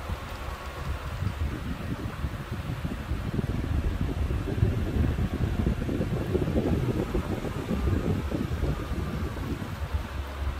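12-inch shutter-type exhaust fan running steadily, its air rushing out with an uneven low rumble as the blast buffets the microphone.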